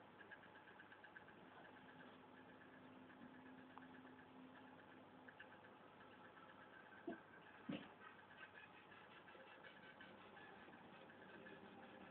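Near silence: faint room tone, with two brief soft sounds a little past the middle.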